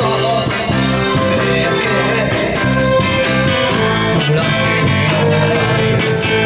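A live band playing amplified pop-rock music: a drum kit keeping a steady beat on the cymbals, with bass guitar, guitar and keyboard, through PA speakers.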